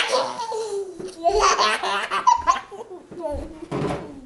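A toddler laughing while being bounced in a horsie-ride game: a long squeal that falls in pitch, then a run of shorter bursts of laughter.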